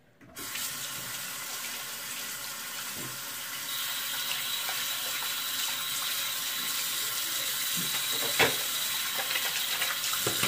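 Bathroom sink tap turned on about a quarter second in and running steadily as something is rinsed under it, the flow growing a little louder about four seconds in. A single sharp knock near the end.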